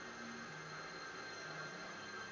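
Faint steady hiss with a weak low hum that comes and goes: room tone, with no distinct event.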